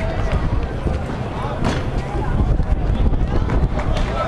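Outdoor street basketball game from courtside: indistinct voices of players and spectators over a low rumble of wind on the microphone, with a few sharp knocks, the clearest about a second and a half in.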